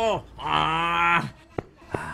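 A cartoon voice holding a long low note that drops away at its end, after the tail of an earlier held note. Two short sharp clicks follow near the end.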